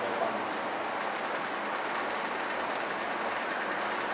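A steady, even rushing hiss of background noise with a few faint ticks.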